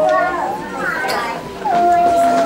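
Young children's voices chattering and calling out in a hall, with one high voice holding a steady note near the end.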